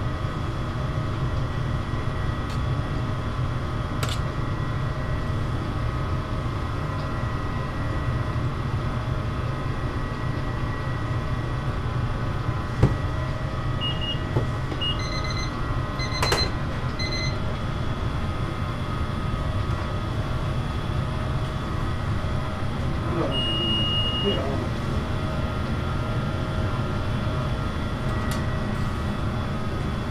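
Steady low rumble and hum of commercial kitchen equipment. A few short electronic beeps come a little past halfway, with one sharp knock among them, and a single longer beep follows later.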